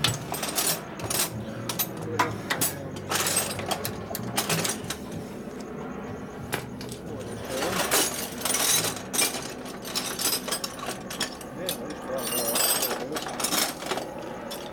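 Irregular metallic clinks and knocks of hand tools and loose engine parts being handled while the top end of a 1964 Harley-Davidson Sportster ironhead engine is stripped, with denser clusters of clinks a few seconds in and again near the end.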